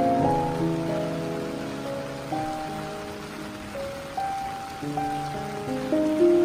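Solo piano playing a slow, soft passage: the notes thin out and fade through the middle, then pick up again near the end. Under it, a steady sound of rain falling.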